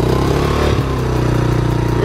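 Small gasoline youth ATV engine running loud while warming up, its pitch lifting and dropping briefly about half a second in.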